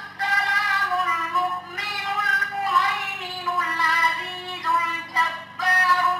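A boy chanting a Quranic recitation into a microphone, in long held, melodic notes broken by short pauses for breath, over a steady low electrical hum from the sound system.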